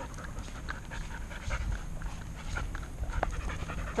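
A dog panting close by in quick, even breaths, about four a second, over a low rumble.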